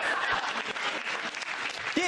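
Studio audience laughing and applauding after a joke, the noise easing off a little in the second half.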